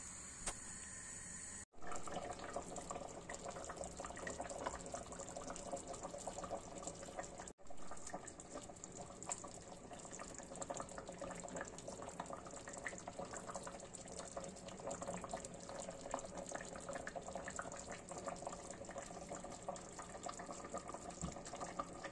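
Potato stew simmering in a steel pot on the stove, its broth bubbling steadily with a crackle of small pops.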